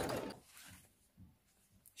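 Singer Quantum electronic sewing machine stitching a band of elastic, stopping about half a second in. A few faint soft sounds follow.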